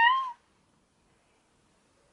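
A little girl's high-pitched, drawn-out squeal, rising slightly and stopping about a third of a second in; after that, near silence.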